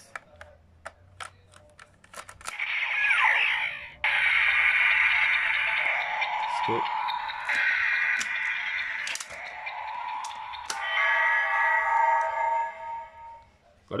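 Electronic toy transformation belt, the Kamen Rider Zi-O Ziku Driver, being operated. Plastic clicks as the Kuuga Ridewatch and the driver are set come first. The belt then plays its electronic sound effects and standby music, with a falling glide, then a steady looping tune with a few clicks, for about ten seconds before it stops.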